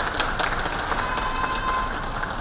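Scattered hand clapping from a small outdoor audience, a run of quick sharp claps over steady street background noise.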